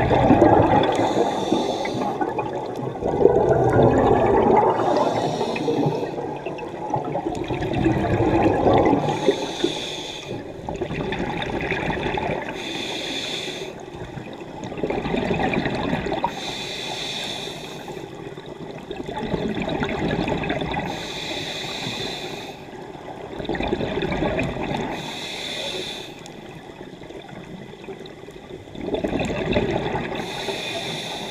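Scuba diver breathing through a regulator underwater: a short hiss on each inhale, then a longer rush of exhaust bubbles on each exhale, repeating about every four seconds.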